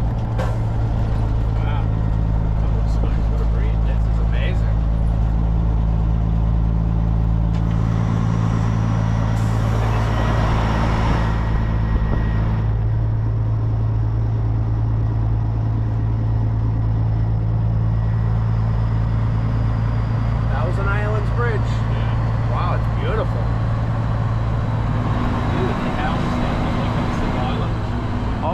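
Steady low drone of a semi truck's diesel engine at cruise, heard from inside the cab, with road and tyre noise. The noise swells for a few seconds partway through.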